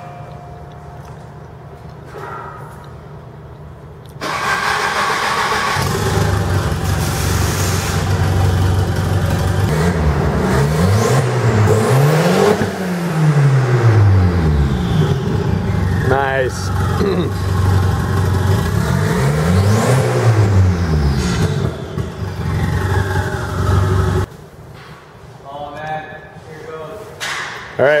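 Turbocharged Volvo 740 red-block four-cylinder running with an open downpipe and no muffler, very loud. It comes in suddenly about four seconds in, is revved up and down in a cluster of blips midway and again a little later, then cuts out about four seconds before the end.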